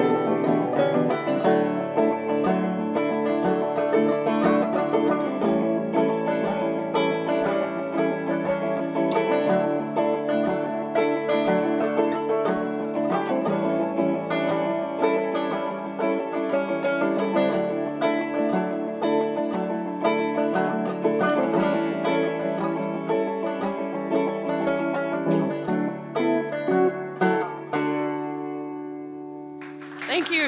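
Banjo and electric guitar playing an instrumental passage, quick plucked banjo notes over steadier guitar notes. Near the end the playing stops on a last chord that rings and fades away.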